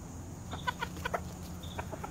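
Chickens clucking softly: a quick string of short clucks starting about half a second in, and a couple more near the end.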